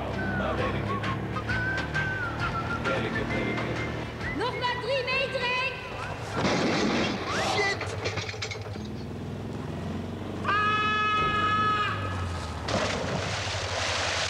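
A small car's engine running as the car pulls away over gravel, mixed with music and shouted voices. A steady held tone sounds for about a second and a half, a little past two-thirds of the way through.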